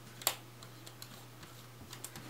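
Small, sharp clicks as the name ring of an Ennalyth 135mm f/3.5 lens is turned by hand into the threads at the front of the lens: one distinct click near the start, then a few faint ticks.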